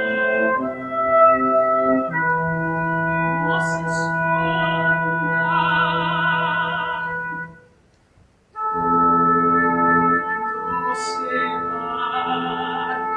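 Soprano singing sustained operatic lines with vibrato over instrumental accompaniment with a held low note. The music stops for about a second, shortly before eight seconds in, then voice and instruments resume.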